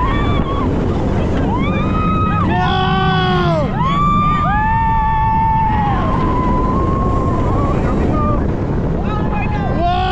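Riders on a B&M hyper coaster screaming and yelling in several long, arching screams, with one long held scream a little past the middle. Underneath is a steady low rush of wind on the microphone and the rumble of the moving train.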